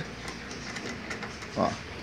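Faint small metallic ticks of a wing nut being spun by hand onto a bolt through a steel hinge, over a steady low background hiss.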